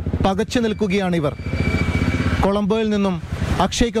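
Men's voices talking, and in a pause of about a second a vehicle engine is heard running close by, a low steady pulsing with a faint whine, before the talk resumes.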